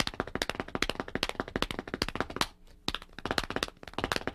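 Hands slapping the thighs and sneakers tapping a wooden floor in a fast drumming exercise without a kit: two hand strokes then four foot strokes, over and over, as rapid even taps. They break off briefly about two and a half seconds in, then start again.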